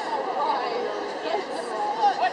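Indistinct chatter of several people's voices, no clear words, over the steady background murmur of a large open space.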